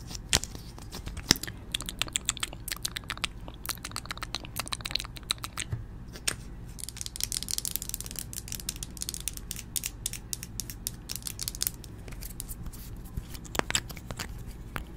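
Close-miked ASMR handling sounds of fingers working a liquid lipstick tube and other makeup: a dense run of small clicks, taps and crinkly rustles, thickening into a crackly patch about halfway through.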